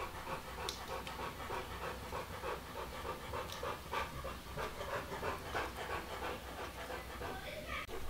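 A bulldog panting: quick, steady breaths, each one a short noisy huff, repeating evenly.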